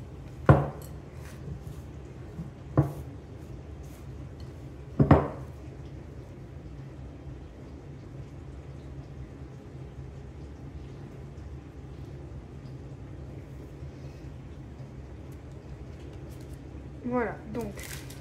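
Glass mixing bowl knocking against a wooden table a few times in the first five seconds as bread dough is worked out of it, over a steady low background hum.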